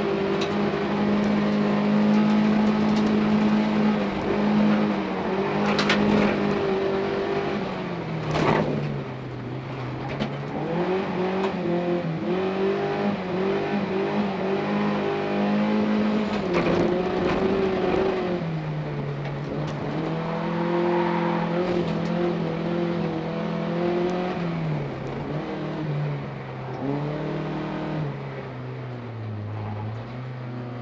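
Folk-race car's engine heard from inside the cabin, under load and revving, its pitch dropping and climbing again several times as the driver lifts, shifts and accelerates. Two sharp knocks stand out, about six and eight seconds in.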